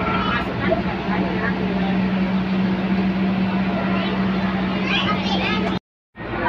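Bus running along a city street, heard from inside the cabin: a steady engine and road drone with a constant low hum, with voices over it. The sound cuts out abruptly for a moment just before the end.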